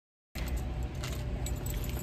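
After a short cut to silence, a bunch of keys jingles in irregular, scattered clinks while being carried, over a low rumble.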